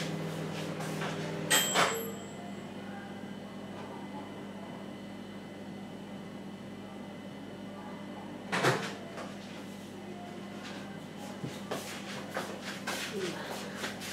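Kitchen cupboard or appliance doors banging shut: a sharp clack about a second and a half in with a brief ringing after it, another clack near nine seconds, then light clicks and knocks of handling in the last few seconds over a steady low background.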